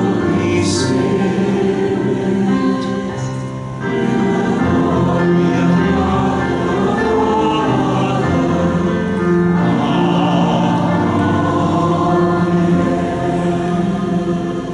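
Choir singing liturgical music for the Mass in long held notes, with a brief break between phrases about four seconds in.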